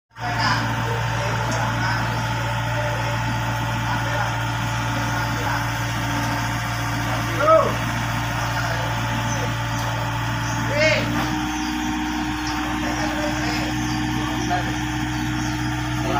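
Komatsu mini excavator's diesel engine running steadily, its tone shifting about eleven seconds in as the machine takes on load.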